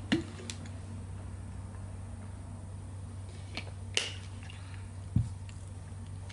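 A few sharp, scattered clicks and a short low thump from eating and drinking, chewing and swallowing with a plastic shaker bottle, over a steady low hum; the loudest click comes about four seconds in.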